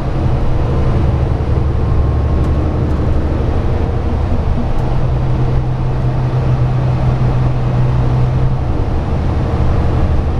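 Cabin noise inside a New Flyer Xcelsior XN60 articulated bus driving along: a steady engine drone and road noise. A low hum grows stronger from about five seconds in and fades back shortly before the end.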